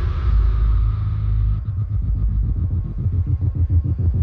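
Loud electronic dance music from the club sound system, with heavy distorted bass. About a second and a half in, a fast drum roll of rapid repeated beats starts and runs into the next section.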